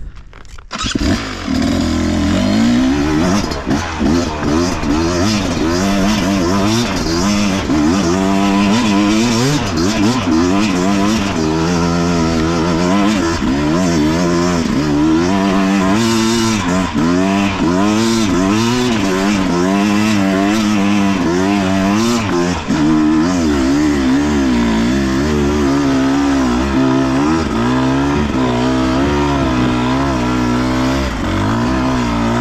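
Beta RR 250 Racing two-stroke engine, fitted with an S3 high-compression cylinder head, revving up and down under load as the bike is ridden on a dirt trail, its pitch rising and falling constantly. It comes in loud about a second in.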